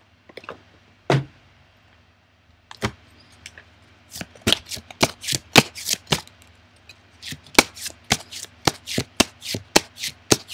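A deck of divination cards being shuffled by hand. A few isolated card taps come first, then from about four seconds in quick runs of sharp card slaps, several a second, with a brief pause in the middle.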